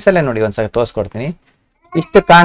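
A man's voice talking, breaking off about a second and a half in for a short pause before speech starts again.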